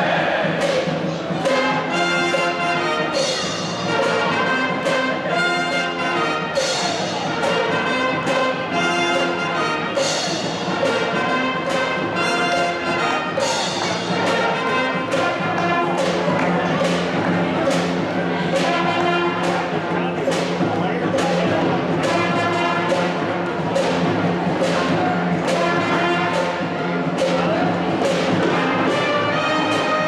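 High school pep band playing: trumpets, trombones, low brass and saxophones over a drum kit keeping a steady beat.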